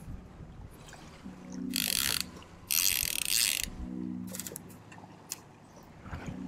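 Clicker of a conventional saltwater fishing reel buzzing in two bursts, the second about a second long, as line pays out. A live bait swimming away on a reel in free spool with the clicker on is pulling the line off.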